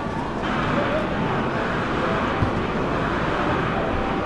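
Steady outdoor background noise, an even hiss and rumble like distant traffic or wind, with one short thump about two and a half seconds in.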